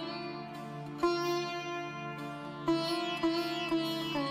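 Background music: a sitar-like plucked string instrument playing a slow, sombre melody over a steady drone. Several notes slide in pitch after they are struck.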